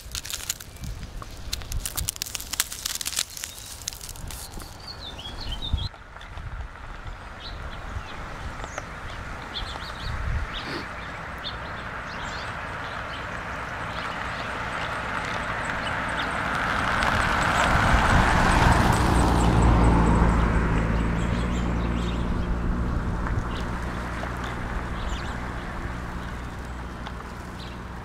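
Ice-coated pine needles crackling as a hand squeezes them, over the first few seconds. Then a car drives past on the icy road, its noise slowly swelling to a peak about two-thirds of the way through and fading away, while small birds chirp faintly.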